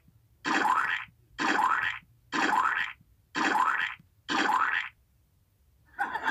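A cartoon comedy sound effect with a quick rising pitch, played five times about once a second.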